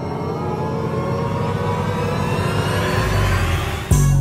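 Intro sound effect: a rising sweep that climbs steadily in pitch and grows louder, then a deep bass hit near the end as a music beat comes in.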